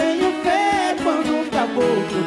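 Viola caipira (Brazilian ten-string guitar) plucked in a steady rhythm of about four strokes a second, playing a sertanejo moda de viola, with a voice singing along.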